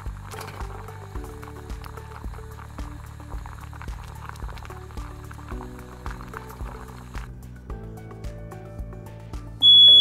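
Background music with a steady beat; near the end a smoke alarm cuts in with a loud, high-pitched beep, set off by smoke from a pot left unattended on the stove.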